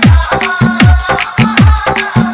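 Bhojpuri DJ remix music in a hard bass style: a booming bass drum whose pitch drops after each hit, about every 0.8 seconds, with fast sharp hi-hat ticks in between.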